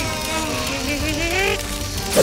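Several cartoon voices straining with effort through clenched teeth in long held sounds that waver in pitch, over background music.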